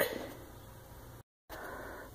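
Faint steady background hiss with no distinct event, broken a little past the middle by a brief dead-silent gap where the recording is cut.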